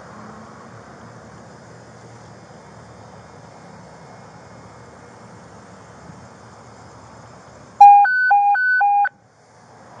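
Police radio alert tone: a loud electronic two-pitch warble that alternates low-high-low-high-low for just over a second near the end, the signal that comes before a dispatch call. Before it, steady faint street noise.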